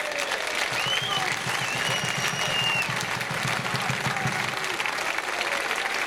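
A large crowd of thousands of football supporters applauding steadily, with a few voices calling out above the clapping.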